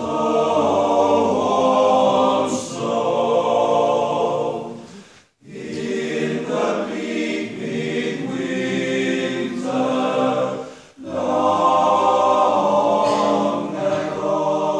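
Male choir singing a cappella in sustained, harmonised phrases, with a brief break between phrases about five seconds in and another about eleven seconds in.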